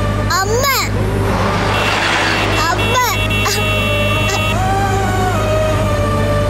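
A young girl crying and wailing in rising and falling cries, briefly about half a second in and again near the middle, over sustained background music and the steady low hum of a car.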